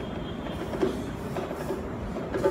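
A steady low rumble through the hall's sound system, with a faint harmonium note held underneath.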